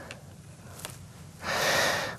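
A quiet pause, then about one and a half seconds in a man draws a half-second audible breath in, close to the microphone.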